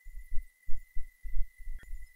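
Deep, irregular thuds, about three a second, under a faint steady high-pitched whine, with one sharp click near the end.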